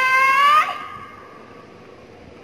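A female singer's held high note that bends upward and breaks off about half a second in, followed by a faint, low hiss of background noise.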